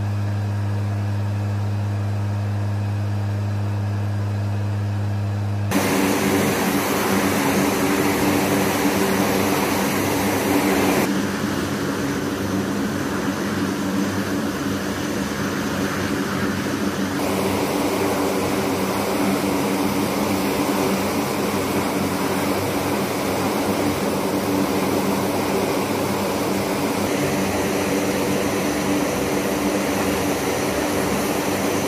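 MC-130J Commando II's four Rolls-Royce AE 2100 turboprop engines. A steady low drone is heard inside the cockpit. About six seconds in it changes suddenly to the louder, noisier running of the engines on the ramp, with a steady hum held under it.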